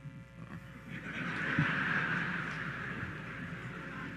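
A large audience in a hall laughing. The laughter swells about a second in and slowly dies away.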